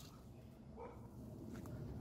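Faint barking of small dogs, which sound like little Yorkshire Terriers, heard as a few short calls about a second in over quiet outdoor background.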